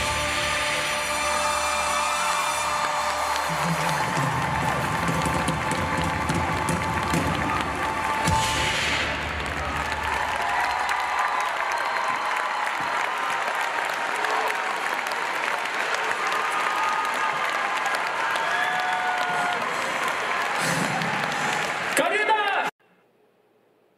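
Live concert audio: band music with a strong bass for about the first ten seconds, then mostly the audience applauding and cheering, with the music thinner underneath.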